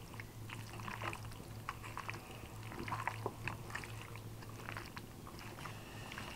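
A hand mixing raw chicken pieces in a wet marinade in a metal bowl: irregular squelches and sticky smacks, over a steady low hum.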